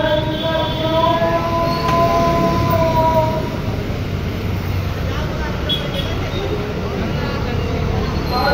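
A voice holding long, gently wavering notes for the first three seconds or so, over steady street traffic noise of motor scooters and cars, which carries on alone after the voice stops.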